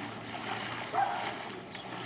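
Floodwater sloshing and swishing around the legs of a person wading steadily through it, with a brief pitched sound about a second in.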